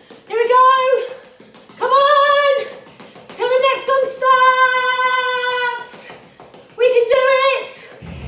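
A high female voice singing in a dance song: four phrases with short pauses between, the longest a steady note held for about two seconds in the middle, with little backing beneath it.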